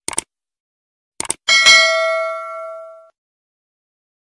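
Subscribe-button animation sound effect: two quick clicks, two more about a second in, then a bright bell ding for the notification bell that rings out and fades over about a second and a half.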